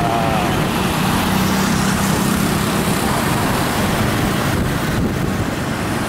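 Steady rush of wind and road noise from riding on a moving motorcycle through traffic, with the motorcycle's engine humming underneath.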